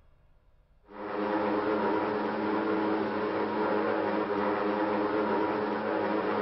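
Aircraft engines droning steadily on an old, thin-sounding archival newsreel recording, starting suddenly about a second in.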